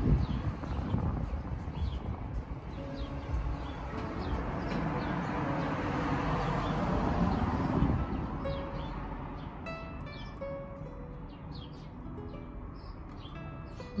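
Soft background music with short held notes, over outdoor ambience. A broad rushing noise swells over the first eight seconds and then fades, and faint bird chirps come in the second half.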